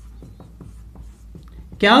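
Marker pen writing on a whiteboard: a quick run of short, quiet strokes as letters are written.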